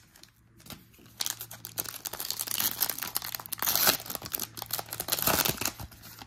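A 2023 Topps Series 1 trading card pack's foil wrapper crinkling and tearing as it is ripped open, a run of dense crackling starting about a second in.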